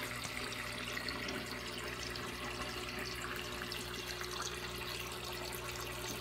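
Water circulating in a 125-gallon saltwater reef aquarium: a steady running-water sound with a faint, steady low hum from the tank's pumps underneath.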